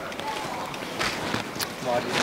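Footsteps of several people walking in sandals on a paved road, sharp slapping steps about every half second, with faint voices.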